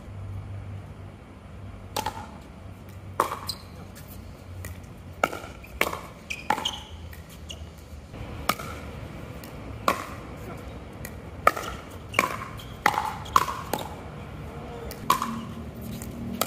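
Pickleball paddles hitting a hard plastic ball during a doubles rally: a dozen or so sharp, hollow pocks come at uneven intervals of about half a second to a second and a half.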